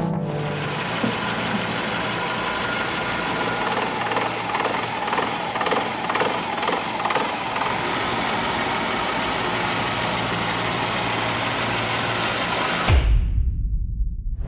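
Nissan Tsuru GSII's four-cylinder petrol engine idling steadily, then cutting off suddenly about a second before the end.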